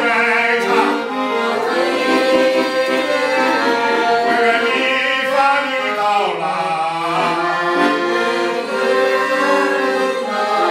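A man sings in a trained, classical vocal style while accompanying himself on a piano accordion, whose reeds hold steady chords under the voice.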